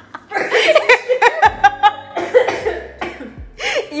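Two women laughing hard, in quick repeated bursts of pitched, breathy laughter.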